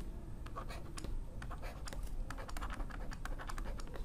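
A stylus writing on a tablet surface: light scratches and quick runs of small clicks as figures are handwritten.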